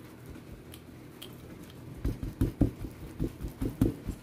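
A wire whisk stirring a thick, crumbly brownie mix in a glass bowl, with faint scraping and, from about halfway through, an irregular run of soft low thumps, about three a second, as the strokes work the mix.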